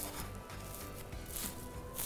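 Quiet background music, with a few soft, brief scrapes of a fork cutting into a moist cake slice on a plate.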